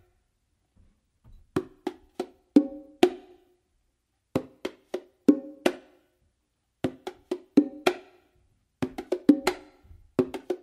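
Meinl bongos played with bare hands: a five-stroke combination of a palm bass on the hembra, a palm-finger movement, an open tone on the hembra and a closed slap with the left hand on the macho. The pattern is played about four times, each quick run of strokes followed by a short pause.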